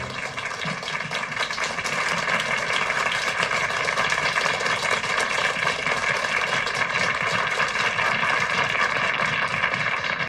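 A crowd applauding steadily: dense clapping that builds slightly over the seconds.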